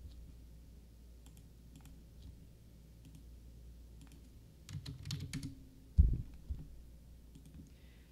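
Computer keyboard keystrokes: a few scattered faint clicks, then a quick run of keys about five seconds in, followed by a dull thump at about six seconds.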